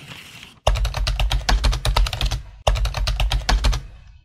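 Intro sound effect: a soft hiss, then a fast run of sharp clicks over a deep low rumble. The clicks break off briefly about two and a half seconds in, then run on to near the end.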